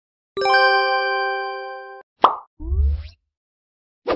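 Logo intro sound effects: a bright chime-like ding that rings for about a second and a half and then cuts off. A short pop follows, then a quick rising swoop over a low bass thump.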